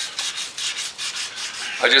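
Quick, repeated hand-rubbing strokes on the wet, painted metal of a car door jamb, a short scratchy hiss with each stroke.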